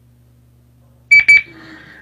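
Two short, loud, high electronic beeps in quick succession a little over a second in, over a faint low electrical hum.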